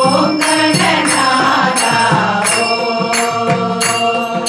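A group singing a devotional bhajan in unison, with hand-clapping and percussion keeping a steady beat of roughly two strikes a second.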